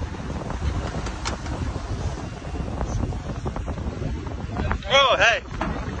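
Wind buffeting the microphone over a low rumble of a boat under way on open water. About five seconds in, a brief, loud, wavering cry of a voice.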